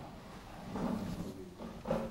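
A faint voice speaking off-microphone, distant and low, rising a little about a second in.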